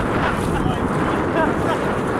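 Wind buffeting the microphone, with water sloshing around legs wading through shallow sea.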